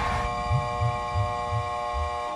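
Commercial soundtrack music: a sustained held chord over low, throbbing bass pulses about three times a second.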